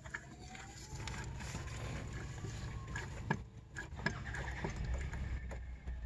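Hand priming pump on a Toyota RAV4 diesel's fuel filter housing being pumped to prime the new filter and purge air from the fuel line, giving a few short clicks between about three and five and a half seconds in. Underneath is a low background rumble with a single tone that slides down, rises, then falls away in the first three seconds.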